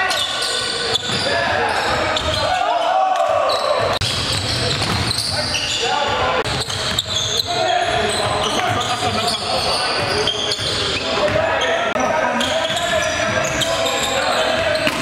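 Basketball game sounds in a gymnasium: a ball bouncing on the hardwood court among players' voices, in the reverberant hall.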